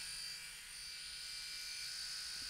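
Electric shaver buzzing steadily and faintly as it runs over the face.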